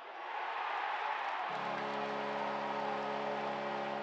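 Short musical logo sting: a swelling noisy wash, joined about a second and a half in by a held low chord that cuts off abruptly at the end.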